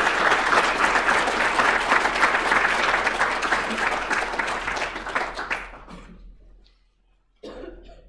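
Audience applauding, dying away about six seconds in.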